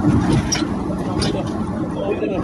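A steady low rumbling noise.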